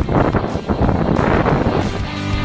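Wind buffeting a handheld camera's microphone, coming in uneven gusts.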